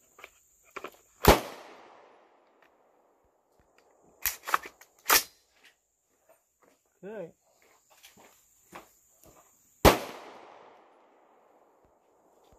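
AR-10 rifle in .308 firing two single shots about eight and a half seconds apart, each echoing away over about a second. Two shorter sharp bangs come in between, along with small handling clicks.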